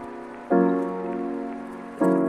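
Background lo-fi music: soft keyboard chords, each struck suddenly and left to fade, a new one about half a second in and another at the very end, with faint high clicks over them.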